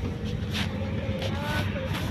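Steady low rumble of a car on the move, engine and road noise heard from inside the cabin.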